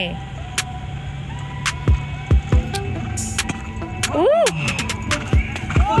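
Outdoor event ambience with irregular sharp knocks and short low thumps, under a faint steady tone. About four seconds in, a person lets out a rising-and-falling "uh, oh", and another "uh" starts right at the end.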